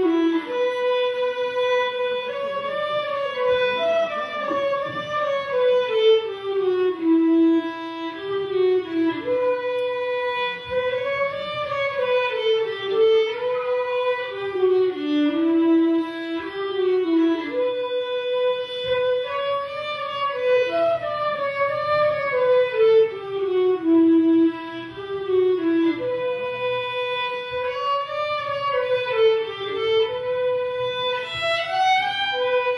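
Live traditional folk tune played on fiddle, transverse flute and diatonic button accordion over a cajón beat. The same melodic phrase repeats about every eight seconds.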